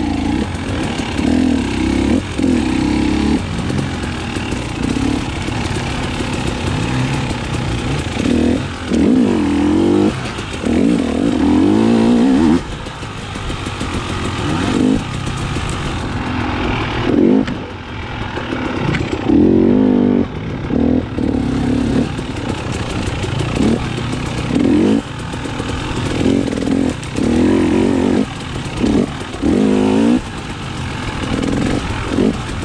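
Single-cylinder two-stroke engine of a 2019 KTM 300 XC-W TPI dirt bike under way, the throttle opened in repeated bursts of revving and shut off between them, the strongest pulls about ten and twenty seconds in.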